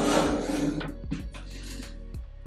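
Sheet-metal ash drawer of a charcoal grill sliding shut on its runners, a scraping rub lasting about a second that fades out, followed by a faint tap. Background music plays underneath.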